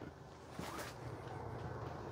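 Quiet room noise with a few faint, soft knocks.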